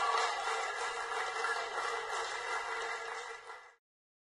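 Steady noisy rush of football-match field sound from the broadcast, cutting off suddenly near the end.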